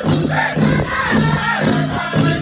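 Powwow drum group singing a men's grass dance song over a steady drum beat, about two strokes a second.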